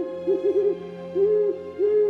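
Owl hooting, a sound effect laid over a shot of a stuffed owl: a quick run of three short hoots, then two longer, drawn-out hoots.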